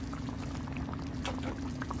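Cream stew simmering in a frying pan, bubbling with many small irregular pops, over a steady low hum.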